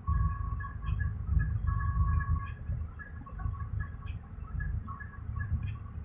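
Low, steady rumble of a car idling, heard inside the cabin while it waits at a red light. A faint voice comes and goes in the background.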